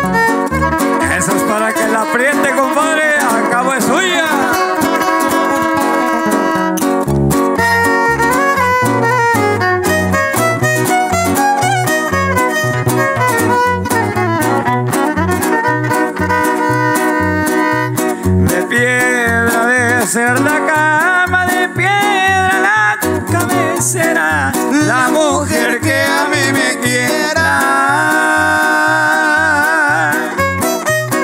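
Live son huasteco trio playing an instrumental passage: a violin carries the melody in sliding runs over the even strummed rhythm of a jarana and a huapanguera.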